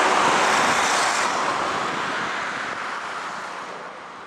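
Road traffic of cars and motorbikes passing, a steady rush of noise that fades out gradually from about a second in.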